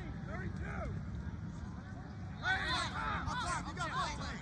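Distant voices calling out across an open field, in two short stretches, over a steady low background rumble.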